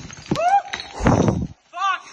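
Two short high-pitched vocal cries, the first rising and then falling, the second higher and arched. Between them comes a loud rough rumble and clatter from a mountain bike riding over a rocky trail.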